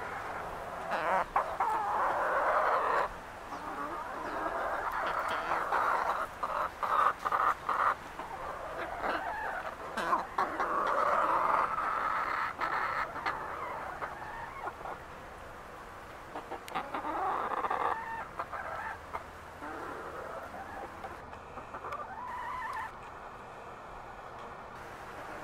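Chickens calling: several long rooster crows, each about two seconds, with short clucks in between.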